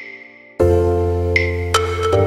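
Background music of struck, bell-like mallet notes over held chords. It thins almost away, then comes back fuller about half a second in.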